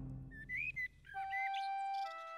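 Cartoon birdsong: a few short, whistle-like rising chirps, joined about a second in by a soft, held musical note.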